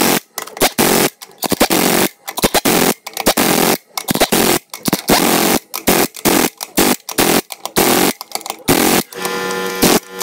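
Heavy impact wrench hammering lug nuts tight on a trailer wheel in short repeated bursts, about one a second, that turn into a longer, steadier run near the end.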